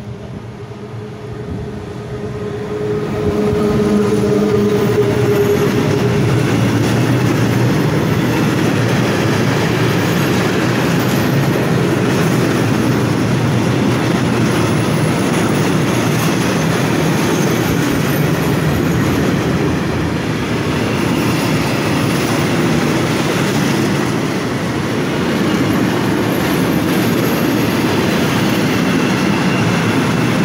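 Electric freight locomotive coming alongside with a steady hum, followed by a long train of tank wagons rolling past close by, the wheels rumbling and clattering over the rails. It grows loud over the first few seconds, then holds steady.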